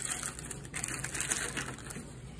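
Candy wrappers and an aluminium foil tray crinkling and rustling as hands dig through a pile of wrapped candy, a quick irregular crackle.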